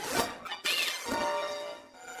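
Cartoon score music with sudden crash sound effects in the first half-second, followed by a brief whistle-like glide and sustained pitched notes.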